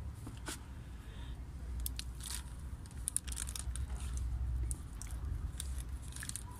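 Hand spray bottle misting water onto the substrate of a tub of germinating cactus seedlings to keep them moist: a string of short hissing squirts, about eight, over a low steady hum.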